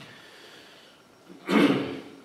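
A man's short, loud breath close to a microphone, about one and a half seconds in, after a low pause.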